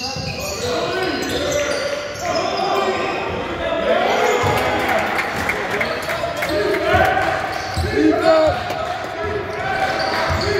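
A basketball bouncing on a wooden sports-hall floor during play, mixed with players' footsteps and voices, all echoing in the large hall.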